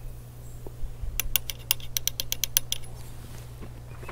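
Black powder charge being poured from a powder measure into the muzzle of an 1842 Springfield musket: a quick run of about a dozen light metallic clicks about a second in, lasting roughly a second and a half.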